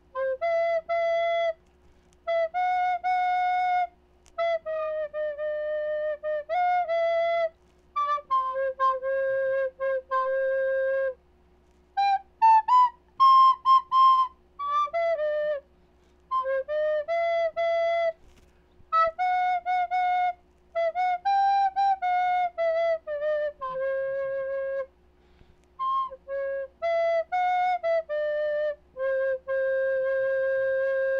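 Flutophone, a small recorder-like flute, playing a slow melody by ear, one held note at a time, with short breaks between phrases. A few higher notes come about halfway through, and a faint steady hum lies underneath.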